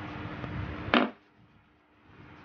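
A single short, sharp click about a second in, over a steady low hum and hiss. The background then drops away almost to silence.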